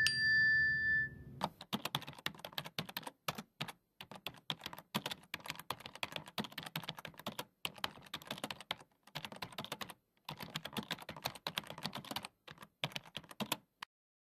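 A bright chime rings briefly at the start, then a computer-keyboard typing sound effect follows: rapid key clicks in runs broken by short pauses, as on-screen text types out, stopping shortly before the end.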